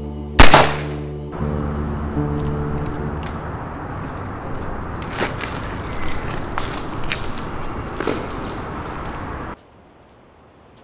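A single revolver gunshot about half a second in, the loudest sound, over a music score. A steady hiss with a few faint clicks follows and cuts off suddenly near the end.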